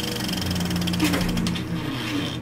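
Film projector sound effect: a fast, steady mechanical clatter, with a low held note joining about half a second in.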